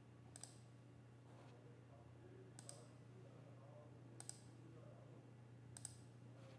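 Four faint computer mouse clicks, spaced a second and a half to two seconds apart, over near-silent room tone with a low steady hum.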